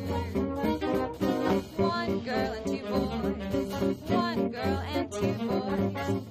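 Small swing jazz band playing an instrumental passage, with saxophones, trumpet and trombone over upright bass, guitar and drums.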